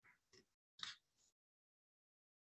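Near silence on a video-call line, with three faint, brief noises in the first second.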